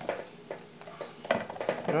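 A spoon clicking and scraping a few times against a metal pan of cooking tapioca with melting cheese, over a steady faint sizzle.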